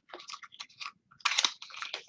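Packaging rustling and crinkling in short, irregular bursts as items are handled in a gift box, loudest about a second and a half in.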